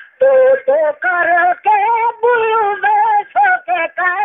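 A voice singing a naat, an Islamic devotional song, in Saraiki, in a high ornamented melody with wavering held notes. It comes in short phrases with brief breaths between them.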